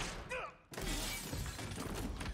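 Film shootout sound effects: sudden loud crashes of gunfire with shattering, splintering debris and a brief cry a little way in.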